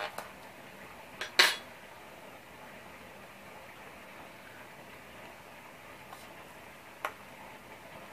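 Two sharp clicks of a small hard object knocking on the craft table, a soft one just before a louder one about a second and a half in, and another faint click near the end, over low steady background hiss.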